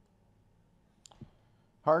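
Quiet room tone broken by a single short click about a second in, the sound of a laptop key advancing the presentation slide, followed by a soft low blip; a man's voice starts speaking near the end.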